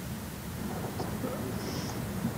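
A faint, muffled man's voice, too quiet to make out, under a steady low rumble and hiss.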